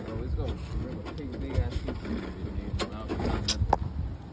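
Indistinct background voices over a low rumble, with a few sharp clicks in the second half.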